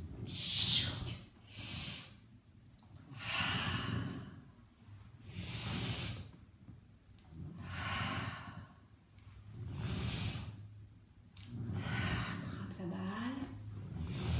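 A woman breathing audibly and rhythmically through the mouth, a breath about every two seconds: paced breathing while working through a Pilates exercise on a gym ball.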